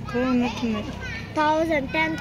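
Children's voices talking and calling out in short, high-pitched phrases, with a brief pause about a second in.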